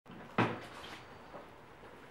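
A door opening, with one sharp clack about half a second in, followed by a couple of faint knocks.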